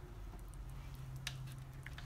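Quiet handling of a hard taco shell filled with juicy shredded beef: a couple of faint light clicks over a low steady hum.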